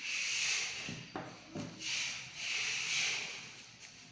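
Fiber stripper and hands working on an optical fiber to strip its coating: several scraping, rubbing strokes, with two small clicks a second and a second and a half in.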